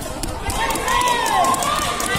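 Voices shouting and calling out at a volleyball match, with one drawn-out call rising and falling in the middle, over general crowd chatter.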